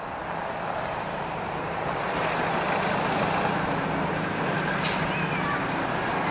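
Street traffic: a car engine's steady hum with tyre and road noise, growing louder about two seconds in as the vehicle sound comes closer, with a single short click near the five-second mark.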